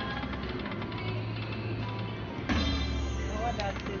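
Video slot machine sounds over casino background chatter and machine music; about two and a half seconds in, a sudden louder burst of electronic tones and a low hum as a new spin starts and the reels begin turning.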